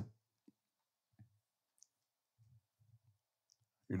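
Near silence with a few faint, scattered clicks and soft low thumps.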